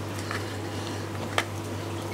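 A steady low hum with one sharp click about one and a half seconds in and a few faint ticks, as the lid fasteners of a Fluval FX2 canister filter are tightened by hand.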